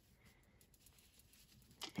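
Near silence: room tone, with one faint click shortly before the end.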